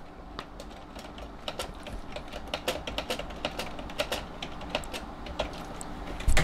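Computer keyboard being typed on: an irregular run of light key clicks, several a second.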